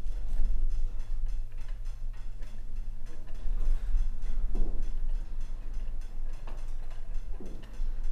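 Small rapid clicks and creaks as a replacement fuel gauge is worked down into its tight rubber gasket in the top of a plastic mower fuel tank, over a steady low hum.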